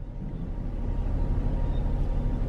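Low steady rumble inside a car's cabin, gradually getting louder.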